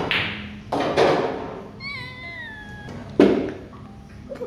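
Pool cue striking the cue ball, then the clack of balls colliding and rolling on the table, with a sharp knock again about three seconds in. Between the knocks comes one high cry that falls in pitch.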